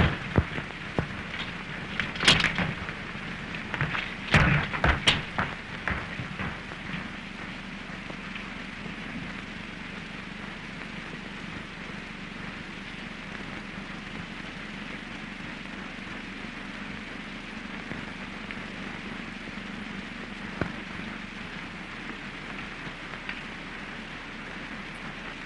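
Steady hiss and low hum of an early-1930s optical film soundtrack, with a handful of knocks and rustles in the first six seconds and one faint click near the end.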